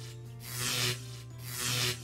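Electricity sound effect: harsh hissing zaps in half-second bursts, about one a second, over quiet background music.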